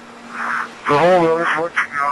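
A man's breathing picked up by the microphone in his pressure-suit helmet: a breathy inhale, then a voiced exhale about a second in, over a steady faint hum.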